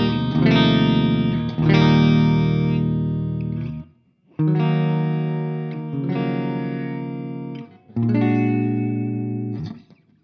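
Solar X1.6 Ola electric guitar on a clean amp tone with the pickup selector in the middle position, a softer tone. Chords are strummed and left to ring, with brief gaps about four and eight seconds in, and the playing stops just before the end.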